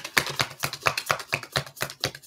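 A deck of oracle cards being shuffled by hand: a quick, irregular run of sharp papery clicks, several a second.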